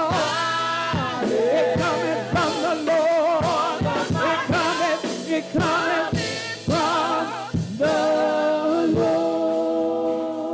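A gospel praise team of women singing in harmony over a drum kit, the voices wavering with vibrato, then holding one long chord from about eight seconds in.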